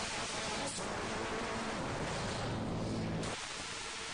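A steady, loud hiss-like noise fills the sound, with the faint low tones of a women's choir singing underneath it; the singing drops out near the end.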